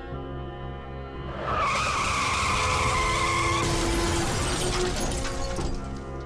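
Car crash sound effect over background music: about a second and a half in, tyres squeal for about two seconds, then a crash with shattering and clattering noise that cuts off near the end.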